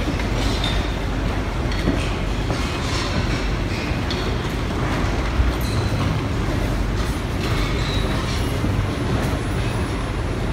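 Steady din of a large, busy airport lounge: a low rumble under an even wash of noise, with scattered light clicks and clatter.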